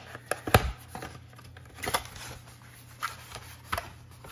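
Cardboard trading-card hobby box being handled and opened by hand: a few short knocks and scrapes, the loudest about half a second in, with softer rustles and taps later.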